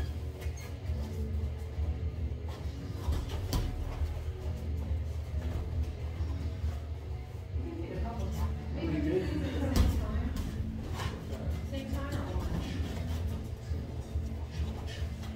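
Boxing gym during sparring: background music and indistinct voices over a steady low hum, with a few sharp smacks of gloved punches landing.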